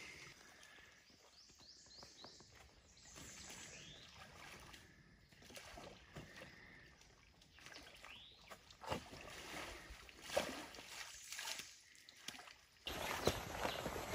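A long-handled tool digging into the mud and packed sticks of a beaver dam: faint, scattered scrapes and dull knocks, more frequent in the second half. Near the end a steadier outdoor hiss cuts in.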